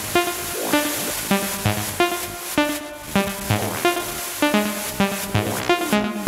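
Techno track playing a breakdown: a repeating pattern of short pitched synth stabs with no kick drum.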